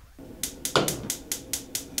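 Gas stove burner's electric igniter clicking rapidly, about five clicks a second, with a louder burst under a second in as the burner catches.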